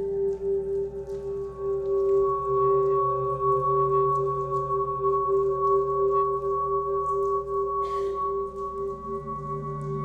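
Ambient performance music of long, steady ringing tones like a singing bowl, layered over a low wavering drone. A higher held tone joins about a second in. Faint scattered ticks sound over it.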